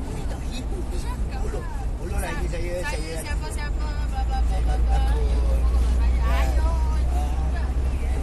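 Low rumble of a passenger van's engine and road noise heard from inside the crowded cabin, growing louder about halfway through, with passengers' voices chattering over it.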